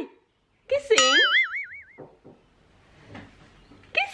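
A cartoon-style 'boing' sound effect: one springy tone that starts sharply just before a second in and wobbles evenly up and down for about a second before it stops.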